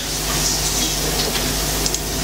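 A steady hiss with a low hum underneath: the background noise of a lecture hall, picked up by the microphone, with no speech.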